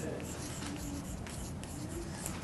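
Chalk writing on a blackboard: a quick run of short scratches and taps as letters are stroked out.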